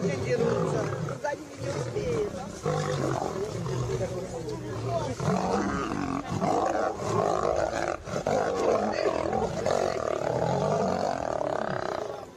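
Two male lions growling and roaring at each other in a fight, a continuous rough vocal rumble that swells and eases without a break.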